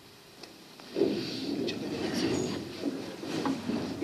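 Near silence of room tone, then about a second in, many people sit down at once: chairs scraping and clattering on a tiled floor, with shuffling and rustling, marking the end of a minute of silence.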